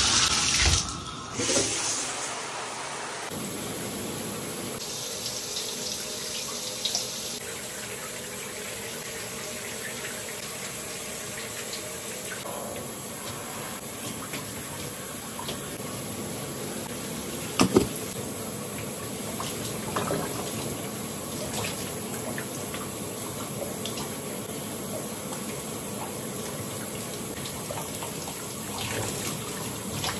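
Shower valve turned on, water rushing loudly from the tub faucet for the first second or two, then a steady shower spray running at a lower level. A single sharp knock about 18 seconds in is the loudest moment.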